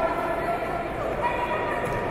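Indistinct voices calling out in a large hall, some calls drawn out for half a second or more, over a steady background murmur.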